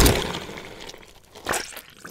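Cartoon stomp sound effect: a boot squashing something underfoot, with a sharp crunch and a crackling tail that fades, then a second, shorter crack about one and a half seconds in.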